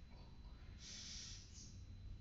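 A person's breath: a short, hissing exhale about a second in, then a briefer one.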